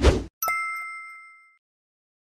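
A short loud thump, then a bright notification-bell ding sound effect that rings with a clear tone and fades out over about a second, marking the click on the subscribe bell icon.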